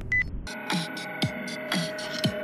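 A short electronic beep from a portable Bluetooth speaker's button being pressed, then electronic music starting about half a second in, with held synth tones and a kick drum about twice a second.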